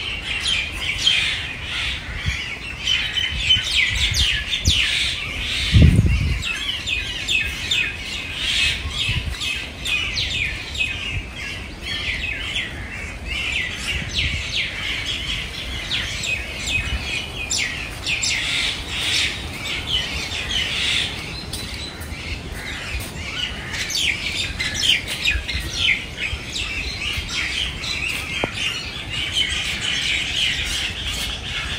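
A dense chorus of many birds chirping and calling at once, short high calls overlapping without pause. A brief low rumble breaks in about six seconds in.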